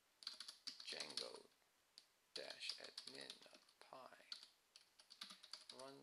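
Computer keyboard typing in short runs of quick keystrokes, with low mumbled speech between them.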